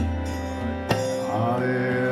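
Kirtan music: a harmonium holding steady chords with tabla strokes, a deep ringing bass stroke near the start and a sharp stroke about a second in. A voice comes in singing the chant about a second and a half in.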